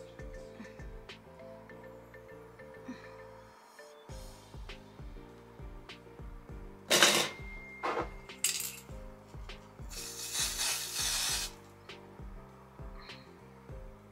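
Aerosol black root-concealer spray hissing from the can in two short bursts, then a longer spray of about a second and a half near the end, over background music.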